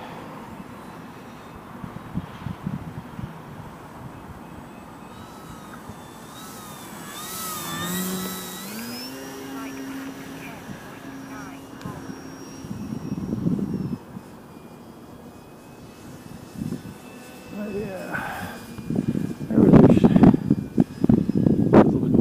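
Electric motor and propeller of a Durafly Tundra RC plane whining faintly overhead. The whine rises in pitch about eight seconds in as the throttle is opened, holds for several seconds, then fades. Near the end a louder rumble of wind on the microphone takes over.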